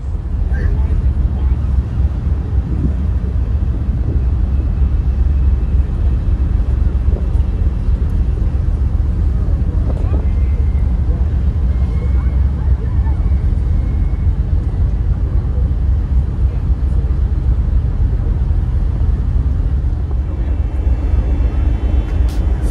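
Deep, steady rumble on the open deck of a ferry as it gets underway out of harbour: wind buffeting the microphone over the ship's engine noise, with no pauses.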